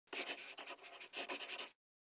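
Scratching of a pen writing on paper: a quick run of scratchy strokes in two groups, about half a second apart, stopping short just before the end.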